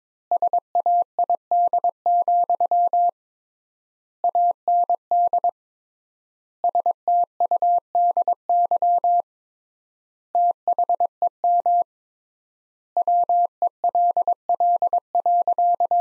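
Morse code sent as an electronic keyed tone at 22 words per minute: rapid dots and dashes on a single steady pitch. Words are separated by pauses of about a second, three times the standard word spacing.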